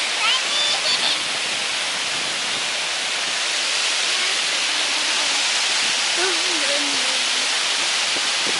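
Water pouring over a small stone weir on a river, a steady rushing hiss.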